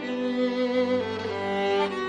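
Fiddle playing a slow Scottish tune: long bowed notes that change pitch a few times, with a lower note sounding beneath the melody.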